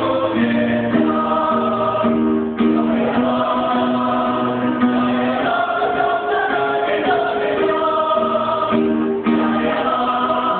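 Mixed choir of men and women singing a march song in several voice parts, holding long notes that move from chord to chord.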